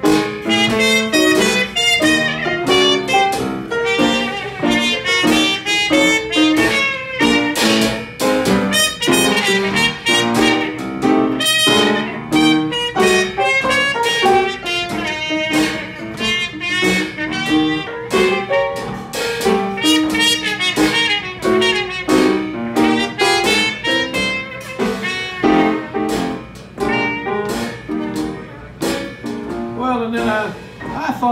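Traditional New Orleans jazz trio playing a slow blues instrumental chorus: trumpet leading over upright piano and a drum kit played with sticks.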